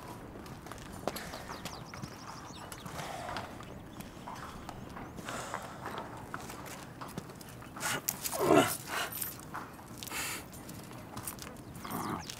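Horse hooves clip-clopping on stone paving, with a louder call falling in pitch about eight and a half seconds in.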